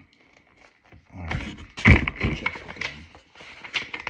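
Handling noise: a thump about two seconds in, with rustling and clicking around it as the bottle is set down and a paper instruction booklet is picked up and opened.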